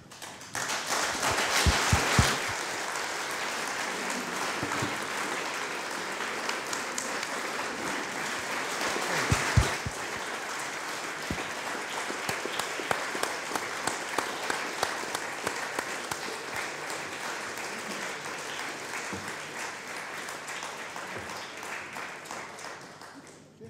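Audience applauding steadily for about twenty seconds, starting suddenly, with a few dull thumps about two seconds in and again near ten seconds.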